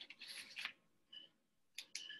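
Near silence with faint, brief rustling and a few small clicks.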